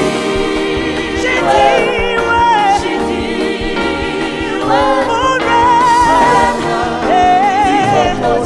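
Gospel worship team singing live: several voices singing together, with a lead voice holding long notes with vibrato.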